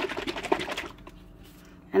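A plastic squeeze bottle of premixed pouring paint shaken hard by hand, a fast even sloshing rattle that stops about a second in. The bottle holds acrylic paint thinned with Floetrol and water, and it is shaken to re-mix anything that has separated.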